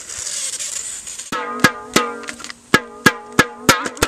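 Breath blown hard into the valve of an inflatable plastic thunder stick, then a pair of inflated thunder sticks banged together about ten times in an uneven rhythm, each hit a sharp, hollow, ringing bang.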